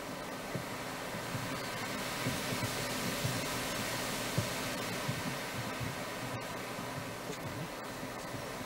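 Steady background hiss with a faint hum throughout: room tone with no distinct event.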